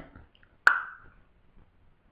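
A single sharp pop about two-thirds of a second in, with a short ringing tail.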